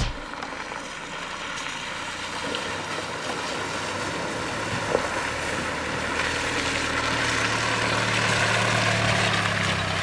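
Land Rover Freelander 2 driving slowly along a muddy lane through a puddle toward the camera, its engine hum and tyre noise growing steadily louder as it draws close. A single short click about five seconds in.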